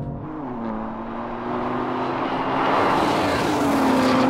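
A performance car driving at speed: a steady engine note that dips in pitch early on, under a rush of tyre and wind noise that swells to its loudest about three seconds in, like a car going past.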